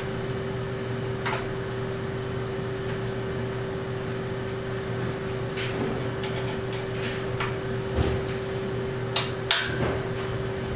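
Metal clicks and knocks from a square-tube bicycle frame jig being handled as its stabilizer bar is loosened and the tubes shifted: a few light clicks, a dull knock about eight seconds in, then two sharp metallic clinks near the end. A steady hum runs underneath.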